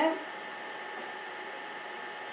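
Steady low hiss with a faint hum: the room and microphone background, with no other sound in it.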